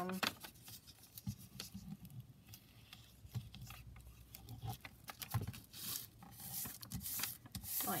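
Faint rubbing and rustling of paper as glue is run along a folded paper flap and the sheet is handled, with a few light knocks on the tabletop.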